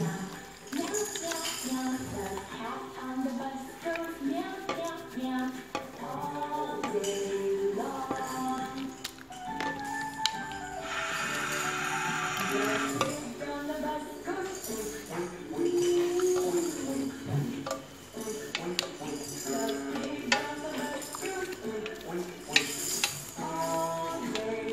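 Background music with a singing voice and a jingling percussion beat.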